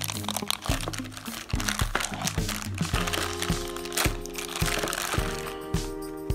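A black plastic mystery bag crinkling as it is torn open and handled, over background music with a steady beat about twice a second. The crinkling stops shortly before the end.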